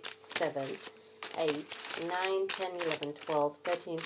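Crinkling of plastic snack wrappers as individually wrapped wafers are picked through by hand. A person's voice runs over it in drawn-out stretches.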